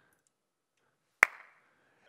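A single sharp click about a second in, with a brief ringing tail, in otherwise near silence.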